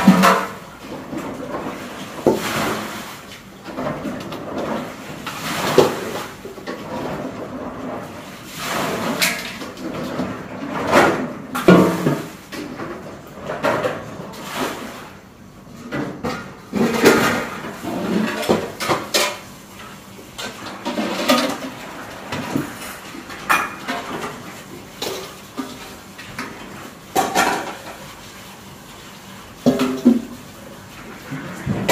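Metal cooking pots clanking and knocking as they are handled and set down, with water running from a tap into a pot.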